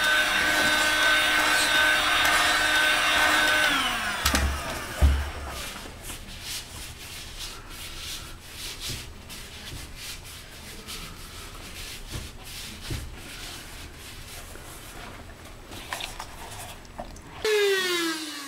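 Paint-stripping heat gun running with a steady whine, its fan winding down as it is switched off about four seconds in. Then come a couple of low thumps and soft rubbing as the heated EVA foam disc is pressed and rounded by hand.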